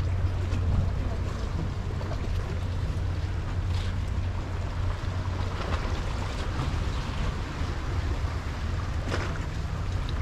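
Steady low hum of a vessel's engine carrying across harbour water, with wind noise on the microphone.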